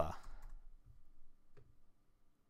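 A few faint clicks of keys being typed on a computer keyboard, the clearest about one and a half seconds in.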